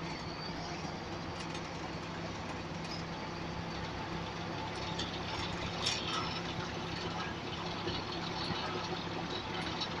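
Interior of a Volvo Eclipse Urban single-deck bus: the diesel engine running with a steady low hum, with a few light rattles and clicks from the bodywork about halfway through.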